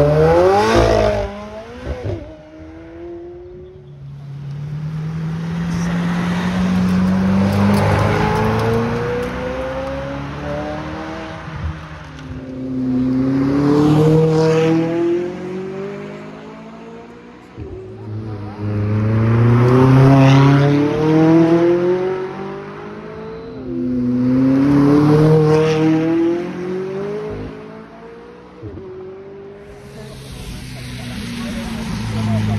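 McLaren supercars' twin-turbo V8 engines accelerating hard up a hill climb, several runs one after another. Each run's pitch climbs in steps, dropping briefly at each upshift, and swells loud as the car nears and passes.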